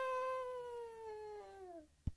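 A person's voice holding one long cry that slowly falls in pitch and fades out over about two seconds: a voice-acted scream of a character falling away off a cliff, trailing out of the word "hell".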